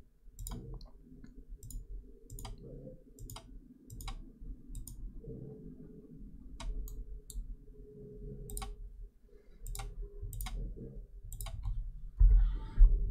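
Computer mouse clicks, about fifteen sharp, unevenly spaced clicks as menu items and references are selected, over a faint steady low hum.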